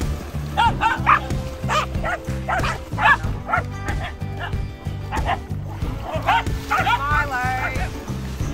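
Dogs barking and yipping excitedly in quick, short calls, with a longer wavering yelp near the end, over background music with a steady, repeating bass line.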